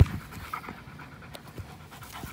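A dog panting close to the microphone during rough tug-of-war play, with a sharp click right at the start.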